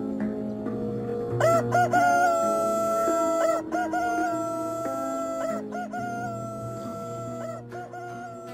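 A rooster crowing three times in a row, each crow about two seconds long with a short broken start and a long held final note, over soft plucked-string background music.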